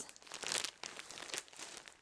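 Clear plastic packaging on packs of bed linen crinkling as the packs are handled and shifted about, an irregular crackle.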